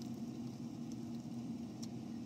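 A car engine idling with a steady low hum, with a couple of faint ticks.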